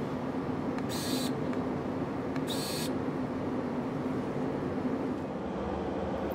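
Steady background hum of lab ventilation, with two short whirring hisses about one and two and a half seconds in from the VIAFLO Voyager electronic pipette's motor driving its adjustable tip spacing.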